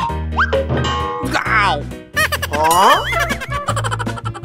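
Upbeat children's background music with a steady bass beat, overlaid with cartoon magic sound effects: a quick rising swoop near the start, a warbling falling slide about a second and a half in, and a burst of rising sparkly glides about three seconds in.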